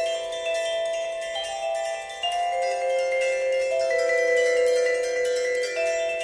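Vibraphone played with mallets: chords of metal bars ringing and overlapping, each note held for a second or more while new notes come in about every half second to second.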